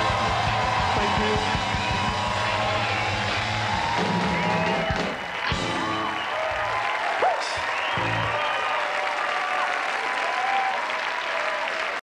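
Live rock band with drums, bass and electric guitar playing the end of a song; about halfway through the full band drops out, leaving a few last hits, while the audience cheers and applauds.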